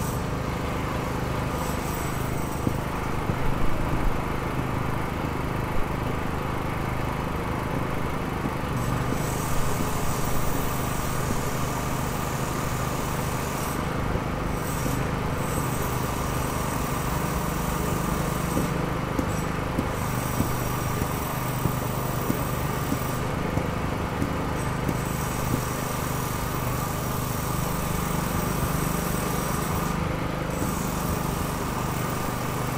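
Road-works machinery: an engine running steadily, with a high whine that drops out and returns several times. A few brief louder clatters come about four and ten seconds in.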